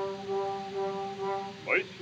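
Orchestral accompaniment on a 1915 acoustic opera recording: a held instrumental note or chord without vibrato, then a quick upward slide near the end.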